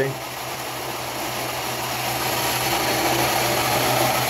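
Large pulse motor running, its drum rotor spinning on full ceramic bearings: a steady low hum under a whirring that grows gradually louder as the low-torque rotor picks up speed.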